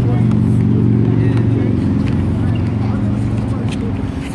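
Motor vehicle engine running close by: a steady low hum that is loudest about a second in and eases slightly toward the end.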